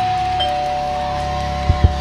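Two-note doorbell chime, a higher ding followed by a lower dong, both held and ringing on over background music. Two quick low thumps come near the end.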